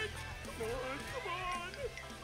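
Cartoon dog voices making several short, strained whines and grunts that bend up and down in pitch, as the characters strain in a thumb war, over soundtrack music.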